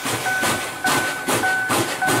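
Steam locomotive working, its exhaust chuffing in an even rhythm of about two beats a second, with a thin high whine that comes and goes.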